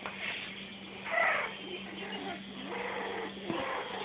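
Feist puppies whining and yelping: several short cries, the loudest about a second in, over a low steady hum.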